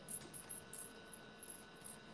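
Faint, high, irregular clinks of a stainless steel curb chain necklace, its links shifting against each other as the wearer moves.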